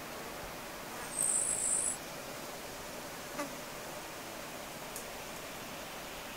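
A short burst of very high-pitched insect chirping about a second in, over a steady outdoor hiss, followed by two faint ticks.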